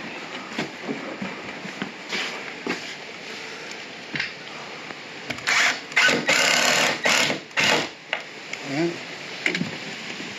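Cordless drill running in four short bursts, about five to eight seconds in, driving a screw into the door frame. Light taps and knocks come before the bursts.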